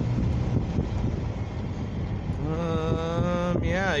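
Road and wind rumble from inside a moving car. About halfway in, a man's drawn-out voice sound starts over it and runs into speech.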